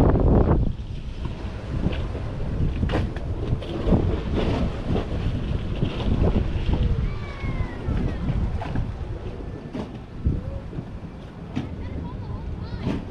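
Wind rumbling on the microphone, an uneven low buffeting with a few short knocks.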